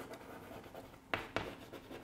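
White chalk writing on a chalkboard: faint scratching strokes, with two sharper taps of the chalk a little past the middle.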